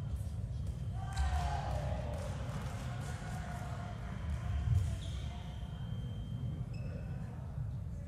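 Ambience of an indoor fencing hall: irregular low thuds of fencers' footwork on the piste, with a murmur of voices in the big hall, strongest about a second in.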